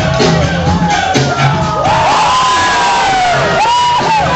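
Music with a beat plays over PA speakers while the crowd whoops and cheers for a dancer. The cheering swells into a noisy roar about two seconds in, with drawn-out rising and falling whoops over it.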